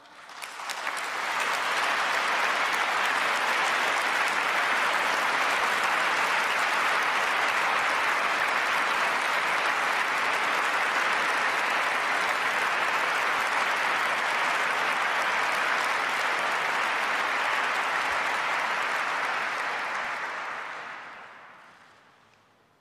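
Sustained applause from a large audience. It swells up over the first couple of seconds, holds steady, and then dies away over the last few seconds.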